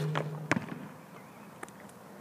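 Basketball bouncing on an outdoor asphalt court: two sharp bounces about half a second apart near the start, then only faint ticks.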